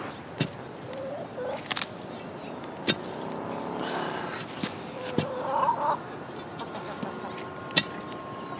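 Chickens clucking in short bursts, with scattered sharp knocks of a digging tool striking soil and clods in a trench; the loudest knocks come about three seconds in and near the end.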